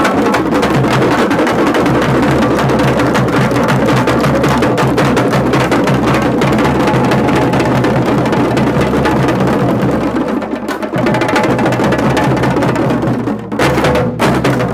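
An ensemble of Tamil parai frame drums beaten with sticks, together with a large barrel drum, playing a fast, dense, continuous rhythm. The beat thins briefly about ten seconds in and breaks off for a moment near the end.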